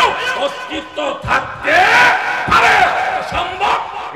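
A man preaching in a loud, shouted, sing-song voice through a public-address system, his pitch sweeping up and down in long drawn-out phrases.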